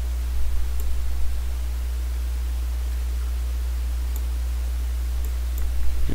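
Steady low electrical hum with hiss from the recording setup, and a few faint ticks, a mouse working a screen recording.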